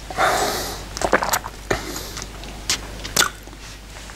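A man sipping neat whisky with an airy slurp, then working it round his mouth with a few short lip smacks and tongue clicks as he tastes it.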